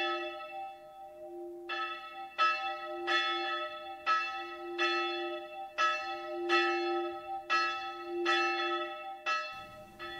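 A church bell ringing, about a dozen strikes at uneven spacing of roughly half a second to a second, each new strike sounding over the bell's low note ringing on underneath.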